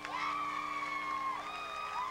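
Audience cheering with long, high-pitched whoops and screams, several voices overlapping, each cry dropping away at its end.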